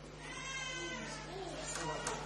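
A faint, high-pitched voice calling out an answer from across the room, off the microphone, with the pitch rising and falling.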